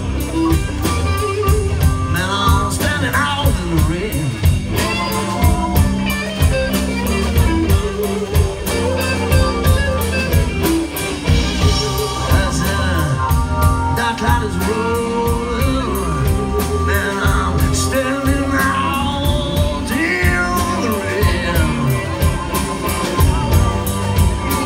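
Live blues band playing a slow blues: electric guitars, electric bass, drum kit and electric piano, with a male singer.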